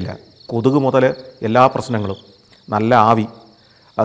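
A man talking in Malayalam in three short phrases with pauses between them, over a steady high-pitched trill of crickets.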